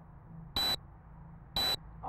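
Video camera's electronic beeper sounding twice, two short high beeps one second apart.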